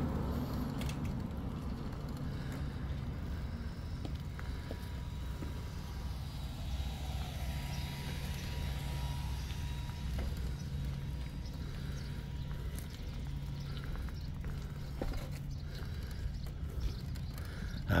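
Steady low rumble of wind buffeting the microphone while riding a bicycle.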